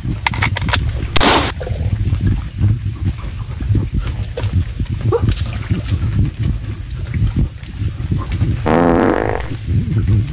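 A man climbing through mangrove roots and branches: wood knocking and cracking under his hands and feet over a steady low rumble on the microphone, and near the end one drawn-out, strained grunt.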